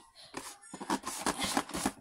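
Cardboard snack boxes rustling and scraping as they are handled and pushed about, a quick run of crinkly scrapes in the second half.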